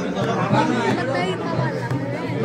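Several people talking at once over one another in a crowded room: a steady chatter of voices with no single speaker standing out.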